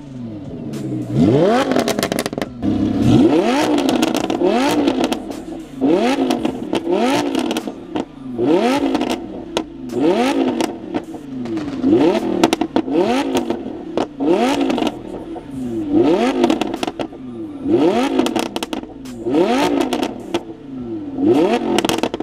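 Lamborghini Huracán LP610-4's naturally aspirated V10 being free-revved through an Fi Exhaust valvetronic catback exhaust: quick blips roughly once a second, each climbing sharply in pitch and falling back. Sharp crackles come from the exhaust as the revs drop.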